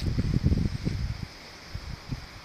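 Irregular low buffeting and rustling on a phone's microphone, strongest in the first second and a half and then fading, over a faint steady high hiss.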